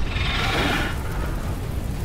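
Film sound effect: a deep, steady rumble with a rushing hiss that swells and fades within the first second, as the ground breaks open into a fiery pit.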